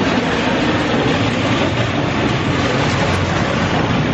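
Loud, steady rumbling din of a train in a railway station, with no break or change: a bit noisy.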